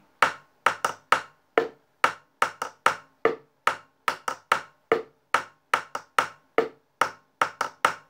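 Two thin sticks tapping a candombe rhythm on upturned plastic containers at song tempo, a higher-pitched and a lower-pitched surface. Sharp, dry taps in a pattern of four to five strokes that repeats about every second and a half, each bar closing on a deeper stroke.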